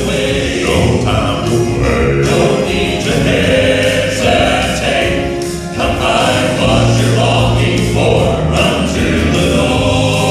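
Male gospel quartet singing in close harmony with a keyboard and instrumental accompaniment, performed live, holding long notes.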